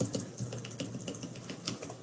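Computer keyboard keys tapped in a quick, irregular run of clicks.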